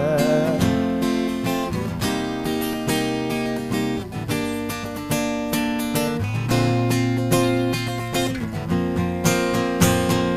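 Acoustic guitar strummed alone in an instrumental break, the chords changing about every two seconds. A held sung note trails off in the first half-second.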